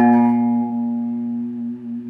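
A single note plucked on an electric bass, ringing with many overtones and slowly fading.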